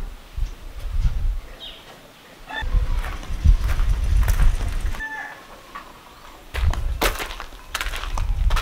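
Gusts of wind buffeting the microphone, giving loud rumbling bursts, with a few short bird calls in the background and some scuffing footsteps on dirt near the end.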